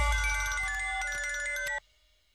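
Mobile phone ringtone: a short melody of clean electronic tones stepping in pitch, cut off suddenly near the end as the call is answered.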